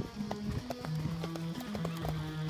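Music with held notes, over the hoofbeats of a horse cantering.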